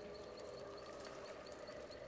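Faint film soundtrack ambience of a night forest: a soft held tone under a rapid, even, high chirping.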